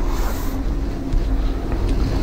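A low, steady rumble with an even hiss and no speech.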